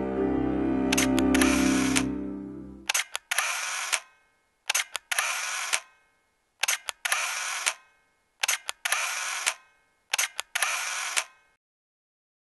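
Camera shutter sound effects, six in a row about every 1.8 s. Each is two quick clicks followed by a short whir, like a motor drive winding on. Background music fades out under the first two of them.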